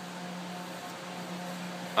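Steady low background hum with a faint even hiss, with no distinct event.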